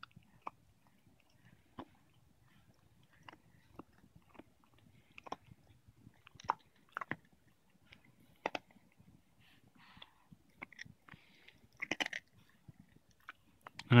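Faint, scattered small clicks and soft rustles from a baby squirming and twisting on a padded play mat, with a couple of soft breathy sounds from him about ten and twelve seconds in.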